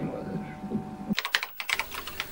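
Faint hum with a thin steady tone, then a quick run of sharp clicks starting a little past a second in.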